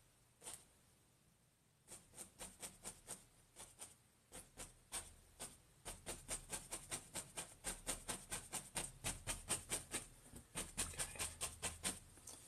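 Faint, quick run of soft taps from an oil-loaded oval brush dabbed against a stretched canvas, about four to five taps a second. The tapping thickens about two seconds in and breaks off briefly near the end.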